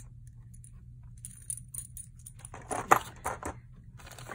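Metal costume jewelry clinking and jangling as it is handled, in scattered small clicks beginning about a second in, with a louder clatter about three seconds in.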